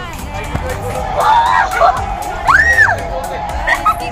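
A child's excited squeal, one call whose pitch rises and then falls, over crowd chatter and background music.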